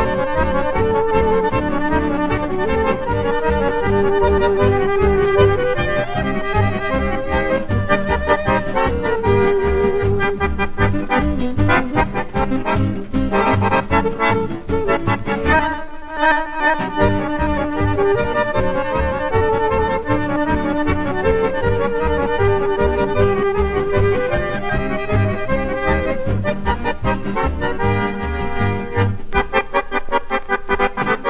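Accordion-led dance band playing a foxtrot, from a 78 rpm shellac record: the accordion carries the melody over a steady beat in the bass. The bass drops out for a moment about halfway through.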